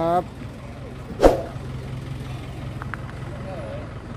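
Steady low engine hum, with one sharp knock a little over a second in.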